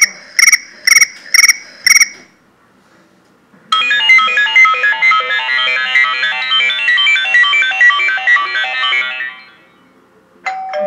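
Mobile phone ringtones played one after another through the phone's speaker: a trilling chirp repeating about twice a second stops about two seconds in, then after a short pause a quick melodic ringtone tune of chiming notes plays for about six seconds and fades.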